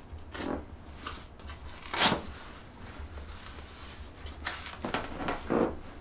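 Fabric rustling and a series of short scratchy noises as a cold-therapy knee pad and its compression strap are wrapped and pressed down around a knee, the loudest about two seconds in and a cluster near the end.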